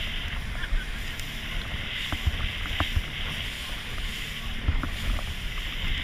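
A small boat under way at sea: steady rushing of water and wind on the microphone with a low rumble. Occasional short knocks, about one a second, are heard as the hull meets the waves.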